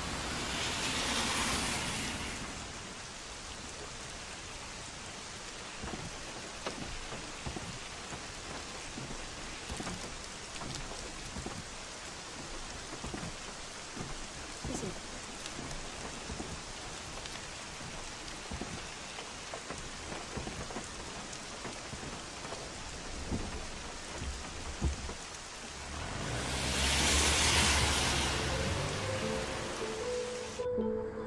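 Steady rain falling, with a roll of thunder at the start and another near the end.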